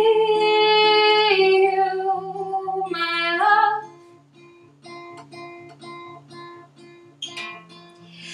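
A woman's voice singing a long held note over a steadily played acoustic guitar; after about four seconds the voice stops and the guitar carries on alone, quieter, in an even repeating picked pattern until the voice briefly returns near the end.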